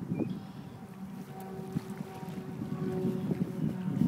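Wind rumbling on a phone microphone, dipping in the middle and building again toward the end, with a faint steady hum underneath.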